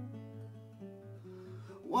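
Steel-string acoustic guitar played softly: single notes picked one after another, stepping in pitch over a held low bass note. A singing voice comes in right at the end.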